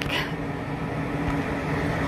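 A steady low mechanical hum under a constant background hiss.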